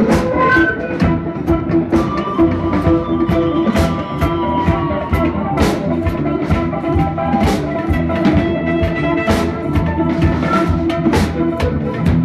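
Live band music: a drum kit keeps a steady beat of cymbal and drum strokes under sustained pitched instrument tones.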